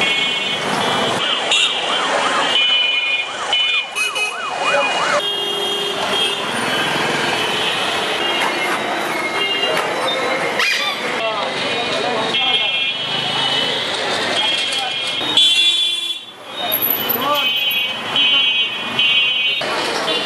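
Busy street traffic with voices. A siren warbles rapidly up and down through the first few seconds, and short shrill toots repeat again and again throughout.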